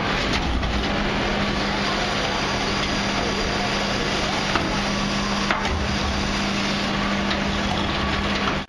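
Dennis Eagle rear-loader refuse truck working its hydraulic bin lift, with a steady hum from the hydraulics under loud mechanical noise as an emptied wheelie bin is lowered from the lift. A couple of sharp knocks come about halfway through.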